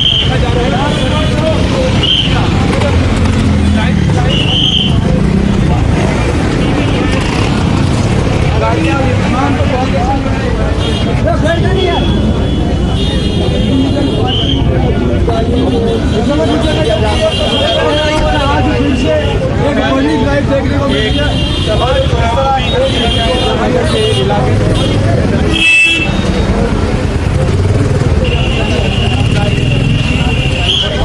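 Crowd voices over street traffic, with vehicle horns sounding again and again, some held for several seconds.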